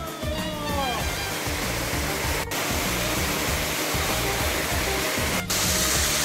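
Steady rush of water from a small waterfall and stream. A voice trails off in the first second, and the sound drops out for an instant twice.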